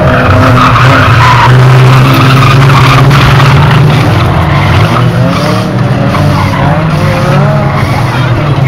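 Several banger-racing car engines revving hard on a shale oval, their pitch rising and falling as the cars pass and go round the bend.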